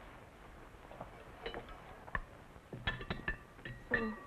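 Tableware at a dinner table: china, cutlery and glass clinking lightly, a few scattered clinks with short ringing, coming closer together near the end.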